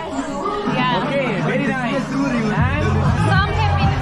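Voices talking over loud background music with a heavy bass line, which swells about two and a half seconds in.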